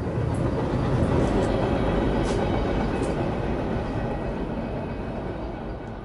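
A freight train passing on the tracks below, a steady noisy rumble that is loudest about a second in and slowly fades toward the end.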